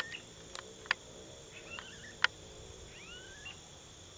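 Smooth-billed anis (anu-preto) giving their rising, whining whistled calls, several short upward-gliding notes, over a steady high insect drone. A few sharp clicks are scattered through.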